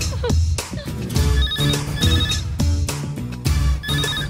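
Film background music with a steady bass beat. Over it a telephone rings with a trilling ring: a double ring in the middle and another ring starting near the end.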